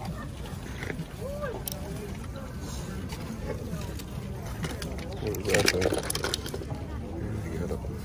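Background voices in a busy outdoor market, with a short clatter of small metal diecast toy cars being picked through in a cardboard box a little past the middle.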